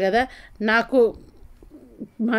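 A woman's voice: two short, drawn-out vocal sounds with a wavering pitch in the first second, then a pause.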